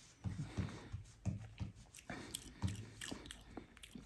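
A person sipping red wine from a glass and working it around the mouth: a series of short, quiet wet mouth sounds and swallows.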